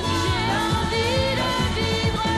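Mid-1970s French disco-pop song: a woman's lead vocal singing a melody over a band with a steady, driving drum beat.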